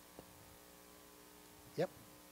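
Faint, steady electrical mains hum of several steady tones, with a short vocal sound near the end.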